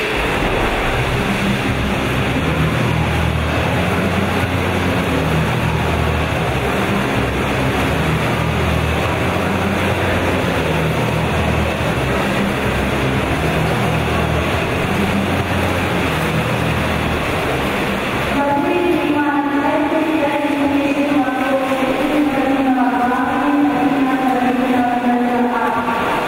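Swimming race in an echoing indoor pool hall: a steady wash of splashing water and crowd noise over a low hum. From about two-thirds of the way through, voices join in with long, drawn-out chanted calls.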